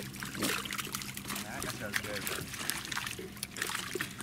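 Fish thrashing and splashing in shallow water crowded inside a net as it is hauled in, with water sloshing in many quick irregular splashes. A steady low hum runs underneath.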